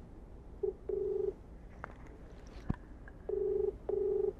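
Ringback tone of an outgoing mobile phone call, heard through the phone's speaker: a low buzzing tone in double rings, two short bursts with a brief gap, then a pause of about two seconds before the next pair.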